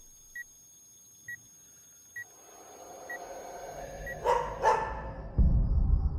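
Trailer sound design: soft high pings about once a second over a faint high tone. A swell builds from about halfway, two sharp hits come in quick succession, and a deep boom lands near the end.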